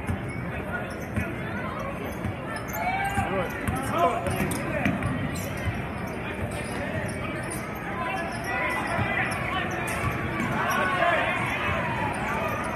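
A basketball dribbled on a hardwood gym floor, with people's voices calling out over the steady din of a crowded gym. The calls are loudest a few seconds in and again near the end.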